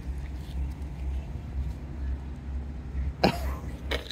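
Outdoor background with a low, steady rumble and no distinct events. A short spoken word comes near the end.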